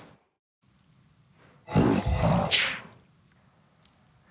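A man's spoken vocal line turned into a demon voice by the Krotos Dehumaniser Simple Monsters plug-in, heard alone without the clean voice blended in. It comes as one phrase of about a second, about two seconds in, after a short silence.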